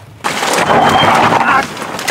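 A car being push-started along a wet gravel track: its tyres crunching and splashing over gravel and puddles as it rolls. The noise starts suddenly about a quarter second in and eases off after about a second and a half.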